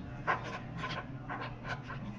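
Quick breathy panting, short breaths about three a second over a steady low hum.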